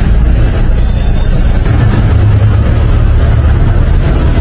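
Large city bus running close by with a steady, loud low rumble, heard on handheld phone footage as the bus moves through a covered parking area.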